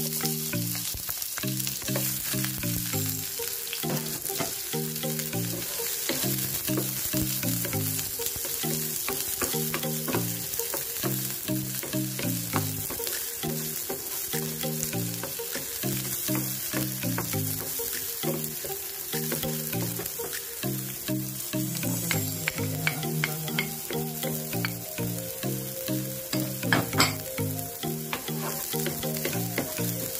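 Chopped onions sizzling in hot oil in a nonstick frying pan, with a wooden spatula scraping and tapping the pan as it stirs them. Background music with a melody line plays over it, and there is one sharper knock near the end.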